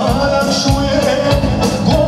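Loud live band music: a male singer singing into a hand microphone over a steady drum beat.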